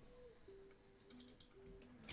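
Faint computer keyboard typing: a quick run of keystrokes about a second in.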